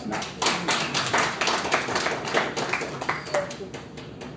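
Audience applauding: a quick patter of many hand claps that thins out and stops about three and a half seconds in.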